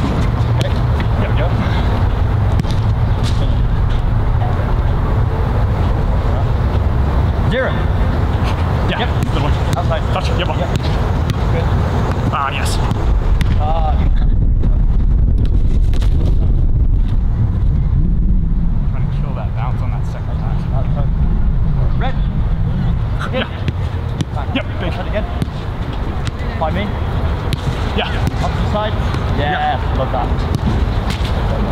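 Football being passed and struck on a grass pitch, a sharp kick every few seconds, with short distant shouts between players over a steady low rumble.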